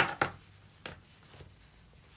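A few short taps and knocks as hands press and smooth fabric onto the round frame of a tambourine-hoop bag lid, the sharpest right at the start and two weaker ones within the first second, then faint rustling.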